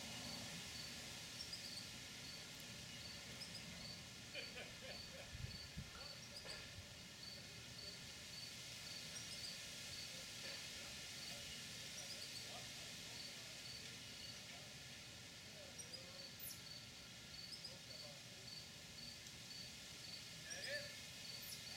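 Faint insect chirping in a steady, even rhythm, about three chirps every two seconds, over a low background hiss.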